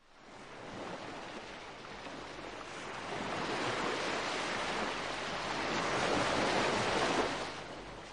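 Surf washing on a beach, a steady rush of waves that fades in at the start, swells through the middle and fades away near the end.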